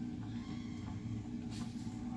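Steady low hum, with a faint tap about one and a half seconds in.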